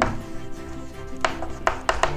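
Chalk writing on a chalkboard, with three sharp taps of the chalk against the board in the second half, over faint steady background music.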